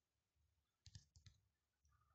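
Very faint key-press clicks from a phone's on-screen keyboard: about four quick taps around a second in, against near silence.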